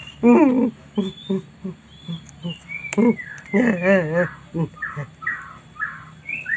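A woman's wordless, frightened cries with a trembling, wavering pitch, a few short cries in a row, as she recoils from a caterpillar on a plant.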